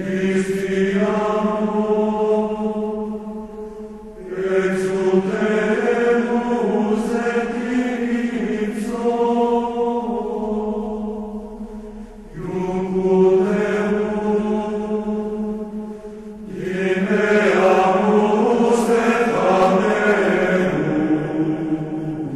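Sacred vocal chant sung slowly in four long phrases of held, gently moving notes, with short breaks between phrases.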